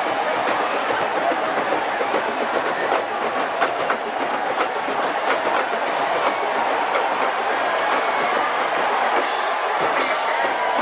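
Steady, loud stadium crowd noise, with a few sharp clicks or hits around the middle.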